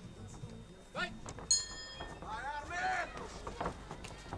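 A single strike of the ring bell about a second and a half in, ringing briefly with several high tones: the signal that starts the round. Shouting voices from around the ring follow.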